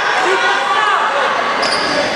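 A basketball bouncing on a wooden gym floor amid the chatter and calls of players and spectators, echoing in the large hall.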